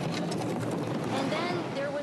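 A person's voice, with a low steady hum beneath it during the first part.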